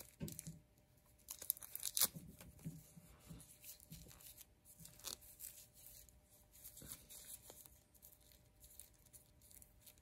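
Faint rustling of an action figure's cloth jumpsuit being handled and posed, with a few sharper clicks, the clearest about two and five seconds in.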